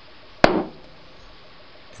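A single sharp pop about half a second in, with a brief fading tail: HHO (hydrogen-oxygen) gas trapped in washing-up liquid bubbles igniting from a lighter flame.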